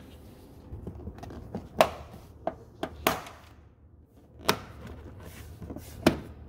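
Plastic door sill trim panel of a Lexus CT 200h being pressed into place by hand, with five or so sharp clicks and knocks as it seats.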